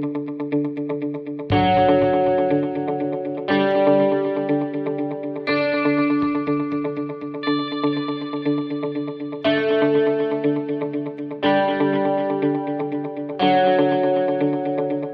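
Background music: sustained chords that change about every two seconds over a quick, steady repeating pulse.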